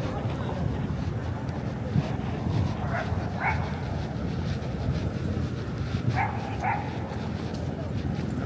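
Busy city street ambience of traffic and passing voices, with a dog barking in two quick pairs: twice about three seconds in and twice again about six seconds in.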